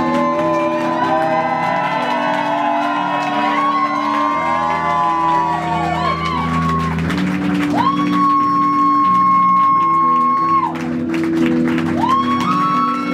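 Live electronic experimental music: held low chords that change every second or two, with high sliding tones bending up and down over them. A deep bass tone comes in from about four to seven seconds in, and scattered clicks and crackle run through it.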